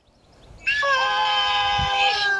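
A toddler's long, high-pitched drawn-out vocal sound, held on one steady pitch for about a second and a half and starting about half a second in, heard through a phone's speaker on a video call.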